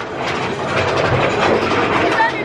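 Mine-train roller coaster running along its track, heard from a seat on the train: a loud, continuous rattle and rumble of the cars on the rails, with the low rumble swelling about a second in.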